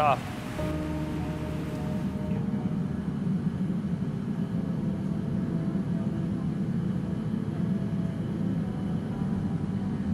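Steady low roar of the gas burners and furnace in a glassblowing workshop, with faint held music notes over it.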